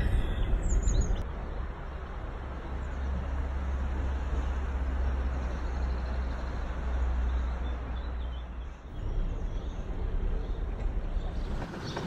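Sailing boat's engine running steadily at low speed as it motors along the canal, a low rumble that eases about nine seconds in.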